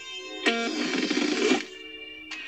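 A short, music-like cartoon sound effect for a gadget switching on and an eye popping out. It starts suddenly about half a second in and cuts off about a second later.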